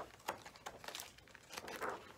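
Pages of a large hardcover picture book being flipped, the paper rustling and flapping in several quick swishes, the loudest near the end.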